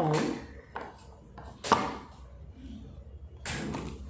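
A solid glass crystal block being handled and set down on a hard surface: one sharp knock a little before halfway, with lighter taps around a second in and near the end.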